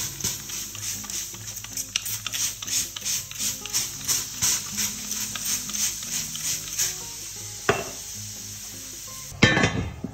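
Trigger spray bottle squirting water over dough in a hot cast-iron Dutch oven base, a couple of squirts a second, with water sizzling on the hot iron. Near the end comes a click, then the loud clank of the cast-iron lid being set on the pan.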